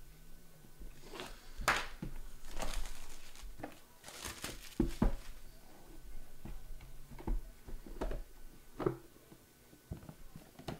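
Trading cards in hard plastic holders and a cardboard box being handled on a tabletop: light clicks and knocks as cases are set down, with sliding, rustling scrapes between them. The sharpest knocks come about halfway through and at the end.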